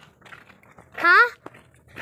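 A boy's single short high-pitched call about a second in, its pitch rising then falling.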